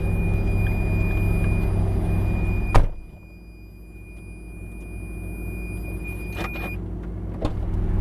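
Ferrari F430's V8 engine idling steadily, then a car door shuts with a sharp thud about three seconds in and the idle sounds much quieter. Near the end another thud, and the idle is loud again.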